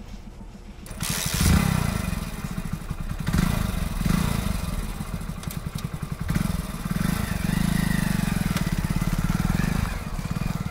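Hero Splendor Plus motorcycle's 97cc single-cylinder four-stroke engine idling, then revved up about a second in. The revs rise and fall for several seconds and hold steadier and higher near the end.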